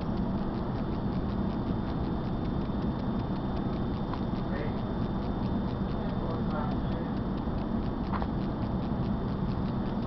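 Steady running noise of an electric suburban train heard from inside the carriage, a low rumble with a fast, even ticking over it.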